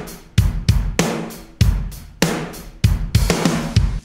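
A multitracked rock drum kit played back on its own: the full drum mix keeps a steady beat of kick-drum thumps, cracking snare hits and a wash of hi-hat and cymbals.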